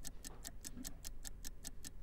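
Countdown-clock ticking sound effect: rapid, evenly spaced ticks, fairly quiet, over a faint low hum.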